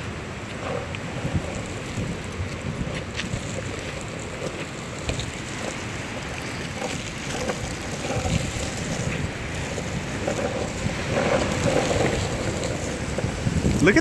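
Wind buffeting the microphone over the rush of breaking ocean surf, in gusts.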